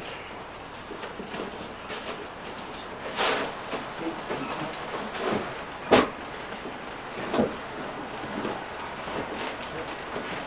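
Rescue equipment being unpacked by hand: a rustling swish about three seconds in, a sharp knock about six seconds in, and a smaller knock a second and a half later.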